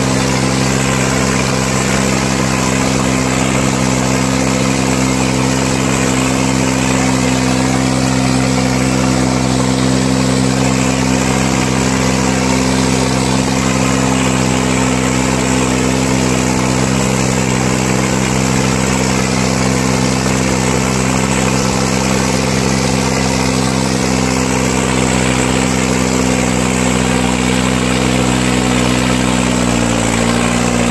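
Tractor diesel engine running at a steady speed, pulling a disc harrow through the soil. Its pitch dips slightly near the end.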